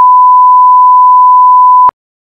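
A single loud electronic beep at one steady pitch, lasting about two seconds. It starts and stops abruptly with a click.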